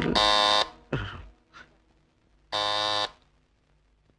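Electric doorbell buzzer sounding twice, each ring a steady buzz of about half a second, with a short knock between them about a second in.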